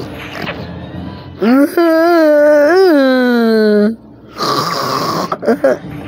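A voice holding drawn-out vocal tones: a short one, then one held about two and a half seconds with a wobbling pitch that sinks at the end. A brief noisy stretch with a few clicks follows near the end.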